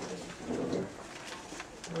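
Low, indistinct murmur of a man's voice in a small room, once about half a second in and again just before the end.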